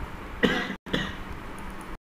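A man clearing his throat in two short, harsh bursts about half a second in.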